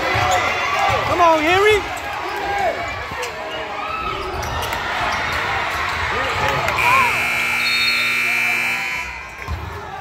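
Spectators shouting and a basketball being dribbled on a hardwood gym floor. About seven seconds in, a steady scoreboard buzzer sounds for over two seconds, signalling the end of play.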